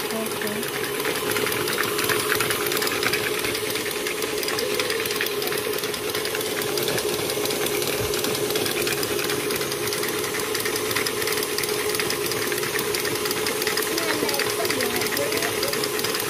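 A KitchenAid stand mixer runs steadily, its flat beater creaming pumpkin cookie dough in a stainless steel bowl. It gives an even motor hum with one constant tone and does not change speed.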